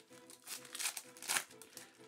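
Foil Pokémon booster pack wrapper crinkling as it is torn open, in three short crinkles.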